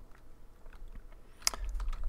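Computer keyboard typing: a few faint keystrokes, with one sharper click about one and a half seconds in.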